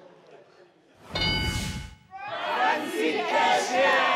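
Game-show answer-board reveal chime about a second in: a short burst of ringing tones over a thud. The studio then breaks into cheering and shouting from many voices.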